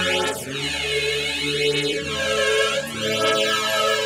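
Instrumental music on an electronic keyboard: slow, sustained chords with a repeated sweeping whoosh running through them.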